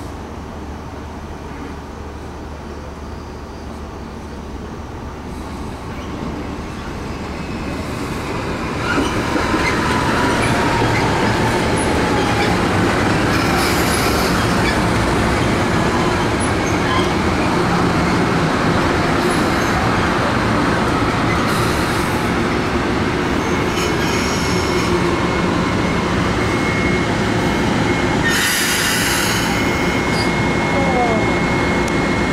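Metro-North M-8 electric multiple-unit commuter train approaching and passing at speed. It builds over several seconds to a steady loud rush of wheels on rail, with a falling whine as the lead cars come by and a few short high-pitched wheel squeals later on.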